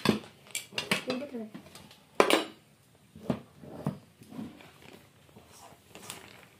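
Plates, a pot and a serving spoon clinking and knocking as food is dished out: about six sharp strikes, the loudest a little over two seconds in.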